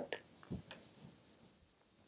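A felt duster wiping a chalkboard: a few faint, short rubbing strokes in the first second, then near silence.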